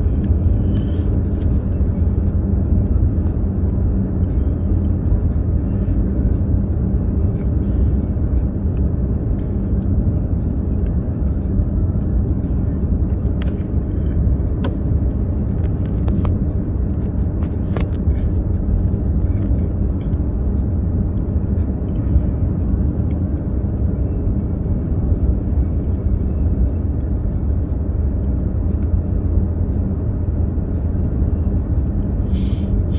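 A car driving at steady speed: an even, low rumble of tyres and engine with no change in pace, and a few faint ticks scattered through it.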